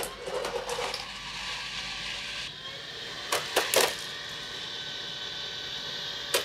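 Samsung Jetbot robot vacuum running with a steady motor whir, with a few sharp clicks about three and a half seconds in.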